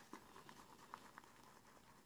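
Faint, irregular soft ticks and patter of a badger-hair shaving brush whisking thick shaving-cream lather around a shaving bowl, very quiet overall.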